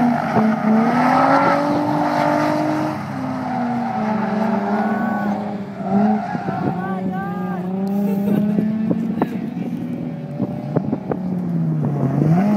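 Nissan 350Z's 3.5-litre V6 drifting, the revs rising and falling as the throttle is worked through the corner, with tyre squeal in the middle. A few sharp clicks near the end.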